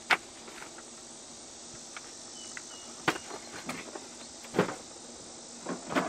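Steady insect chirring, typical of crickets, in the background, broken by a few short knocks and clunks from handling the cardboard packing and the fridge's contents, the loudest about four and a half seconds in.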